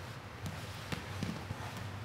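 A few soft thumps and shuffling as two grapplers move their bodies and limbs on foam mats, letting go of a leg lock and sitting up. A steady low hum runs underneath.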